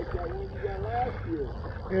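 Low rumble of wind and handling on a phone microphone, with a faint voice murmuring underneath.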